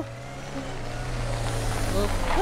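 A Volkswagen Transporter van approaching and pulling up, its engine a low steady drone that grows gradually louder as it nears.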